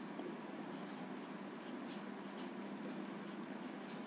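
Marker pen writing on a whiteboard: a run of faint, short scratching strokes as letters are written out.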